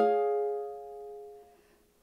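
Ukulele with a capo: a single chord strummed once and left to ring, dying away over about a second and a half.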